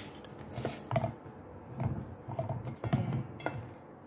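A utensil scraping and knocking against a stainless steel mixing bowl while cookie dough is worked in it: a handful of short, light knocks and scrapes a half-second to a second apart.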